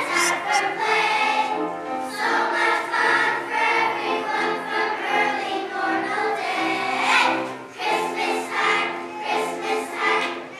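Children's choir singing together, voices holding and changing notes.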